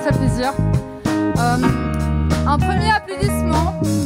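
Live pop band playing: drums, electric guitar, bass and keyboard. A voice comes in over the music in the second half.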